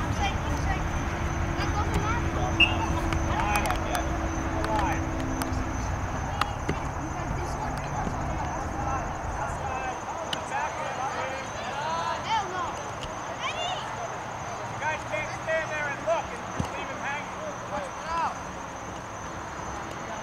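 Indistinct voices of players and onlookers calling out across an open soccer field, more frequent in the second half, over a low rumble that fades about halfway through.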